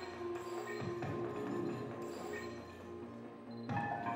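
TV crime-drama soundtrack: sustained synthesized music under electronic computer-interface sound effects, with a new chiming effect near the end.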